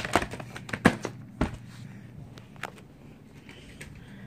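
Plastic VHS clamshell case being handled and flipped over: a few sharp plastic clicks and knocks in the first second and a half, then only faint handling ticks.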